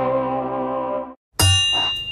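A held electric-guitar chord ending the theme music, cut off about a second in; after a brief gap, a single bright bell-like ding that keeps ringing.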